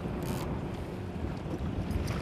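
Steady low rumble of wind on the microphone and a boat on open water, with a faint steady hum under it and a brief hiss about a quarter of a second in.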